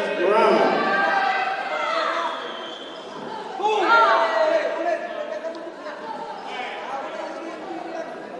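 Several voices shouting and calling out in a large hall, loudest in the first two seconds and again about four seconds in, with quieter chatter between.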